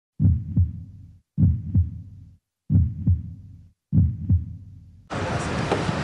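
A heartbeat sound effect over a logo intro: four double thumps, about one every 1.2 seconds, each fading out before the next. Near the end it cuts to the steady noise of a street.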